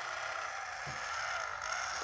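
Electric motor of a 1994 Mattel Jennie Gymnast remote-control doll running steadily, a whirring hum, as it powers her arms and lifts her from lying to sitting. It cuts off at the very end.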